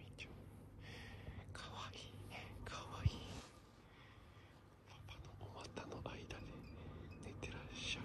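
Soft whispering in short hushed phrases, with one sharp knock about three seconds in.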